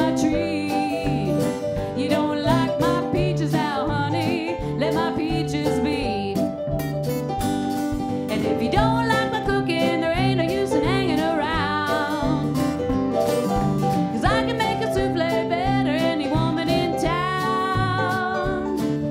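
A woman singing a 1920s-style blues song with vibrato on held notes, to her own strummed acoustic guitar.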